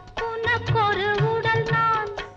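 A 1960s Tamil film song recording: a high melody line that holds and bends its notes over a steady low percussion beat.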